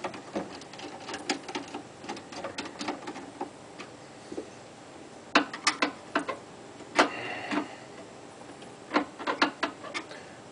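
Flathead screwdriver working the screws on a garbage disposal's drain-pipe connection: irregular small metal clicks and scrapes, with louder bunches of clicks about halfway through and again near the end.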